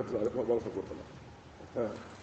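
A man's preaching voice trailing off softly in the first half-second, then a brief low vocal sound near the end.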